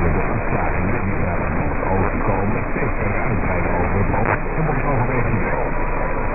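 Weak mediumwave AM broadcast reception on 747 kHz: a faint voice heard through steady static and noise, with the narrow, muffled sound of an AM receiver's bandwidth.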